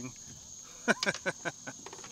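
Steady high-pitched drone of insects, with a few short voice sounds about a second in.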